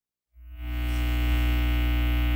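Electrical mains hum in the audio feed, cutting in from silence about a third of a second in and then holding steady: a loud low buzz with a stack of higher overtones.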